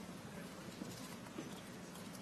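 Faint footsteps of hard shoes on a stage floor, a few light knocks over quiet hall room tone.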